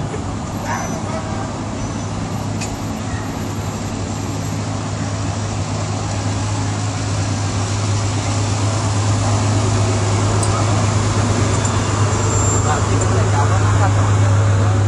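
Off-road race trucks' engines idling in a staging line, a steady low drone that grows louder toward the end, with voices in the background.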